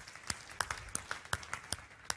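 Scattered hand clapping from the audience, single sharp claps about three a second, dying away near the end.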